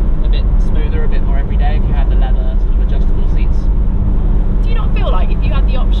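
Steady low rumble of wind buffeting and engine noise in the open cabin of a McLaren 570S Spider cruising with the roof down, its twin-turbo 3.8-litre V8 running under the wind. Voices talk over it at times.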